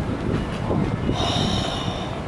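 Steady low rumble of street traffic, with a high-pitched squeal starting about a second in and lasting under a second.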